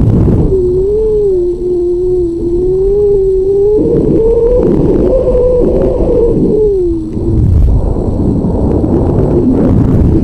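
Wind rushing over an airborne high-power rocket's airframe and onboard camera, a heavy buffeting rumble with a wavering, moaning whistle that wobbles in pitch, rises slightly around the middle and slides down and dies away near the end.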